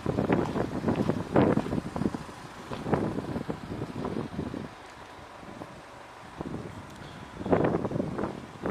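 Wind buffeting the microphone, with irregular rustling and thumps from the handheld camera as it is carried; it goes quieter from about five seconds in and picks up again near the end.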